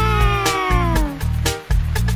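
A children's song backing track with a steady beat, over which, at the start, one long meow-like call rises briefly and then slides down in pitch for about a second.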